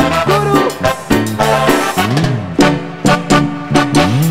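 Live band music with no singing: a steady, regular dance beat on percussion over held bass notes, with one note sliding up and back down about two seconds in.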